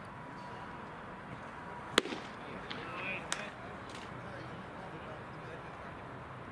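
Open-air ballpark background with one sharp, loud crack about two seconds in, followed by a few fainter clicks over the next two seconds.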